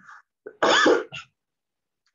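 A man clears his throat with one short, rough cough about half a second in.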